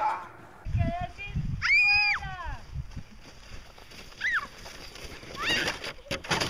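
A high-pitched shriek about two seconds in that rises, holds and falls. Two shorter high yelps follow later, over faint low rumbling from the outdoor sledding scene.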